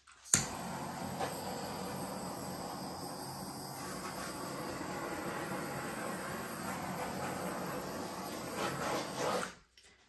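Handheld butane torch clicking alight, then a steady hissing flame for about nine seconds that shuts off suddenly.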